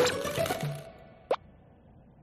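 Cartoon background music fading out, then a single short plop sound effect.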